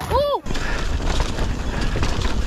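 A short cry at the start as the rider crashes his mountain bike. About half a second in it gives way to the rough noise of a bike descending a dirt trail: tyres on dirt, the frame and chain rattling, and wind on the action camera.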